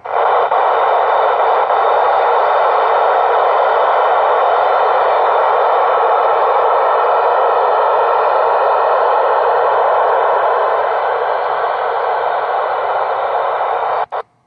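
Steady, loud radio static hiss from an Icom ID-4100A mobile radio's speaker, its receiver open on the TEVEL-3 satellite downlink with no voice coming through. The hiss cuts off suddenly at the very end.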